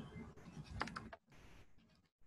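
A few faint clicks of typing on a computer keyboard in the first second, then near quiet.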